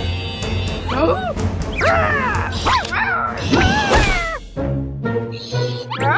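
Cartoon soundtrack music under a cartoon dog character's voiced yelps and whimpers, a string of short cries that swoop up and down in pitch about once a second.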